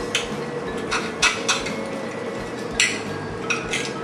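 A steel knife and fork clink and scrape against a ceramic plate while cutting a steak, in scattered sharp clicks, over a faint steady hum.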